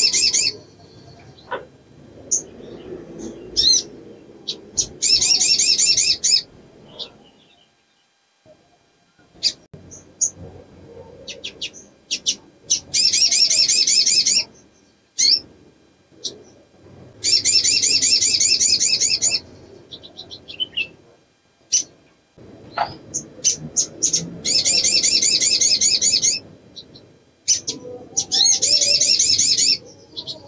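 Female olive-backed sunbird in breeding condition calling: a series of fast, high, rattling trills about two seconds long, repeated every few seconds, with single sharp chips between them. This is the female's call in breeding condition, used to draw a response from males. A low background rumble runs underneath.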